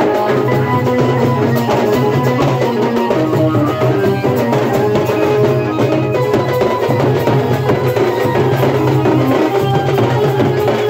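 Chhattisgarhi dhumal wedding band playing live: a large rope-laced barrel drum and stick-beaten drums keep up a fast, steady beat, with a melody line over them.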